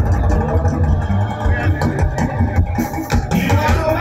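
Live church praise band playing loudly, with a drum kit, bass guitar and keyboard and a heavy, pulsing bass line.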